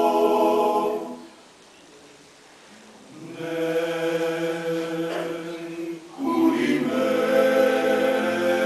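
Male klapa ensemble singing a cappella in close harmony. A held chord breaks off about a second in, and after a pause of about two seconds the voices come back in with sustained chords.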